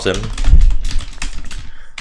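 Typing on a computer keyboard: a quick run of separate keystrokes, with a low thud about half a second in.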